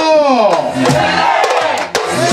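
A group of voices shouting together, the pitch falling over the first half-second, during a short break in the dance music; the music comes back in at the end.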